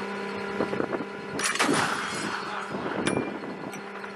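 A single gunshot about a second and a half in, trailing off in an echo, with a fainter crack near the end, over a faint steady hum.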